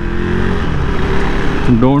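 Motorcycle engine running at a steady cruise under wind and road noise, heard from the rider's seat. A man's voice comes in near the end.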